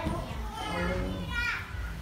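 Indistinct voices of people talking in the background, including a high-pitched, child-like voice about a second and a half in.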